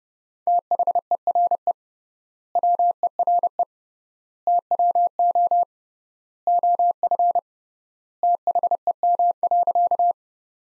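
Morse code sent as a pure tone of about 700 Hz at 30 words per minute: five words of dots and dashes, each word set apart by a gap of about a second (triple word spacing). The five words spell the practice sentence "THERE WERE TWO OF THEM".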